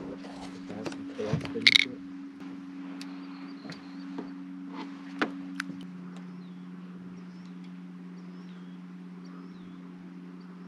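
A boat motor running steadily at trolling speed, a constant low hum, with a few knocks and handling clatter in the first five seconds.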